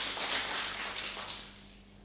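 Small audience clapping, dying away over the last half-second.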